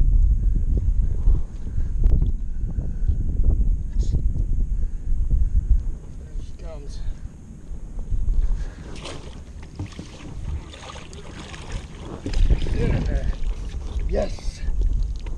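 Wind buffeting the camera microphone in a heavy low rumble, easing off in the middle and gusting again near the end. Short splashes and knocks come through as a bass is drawn into a landing net at the side of the boat.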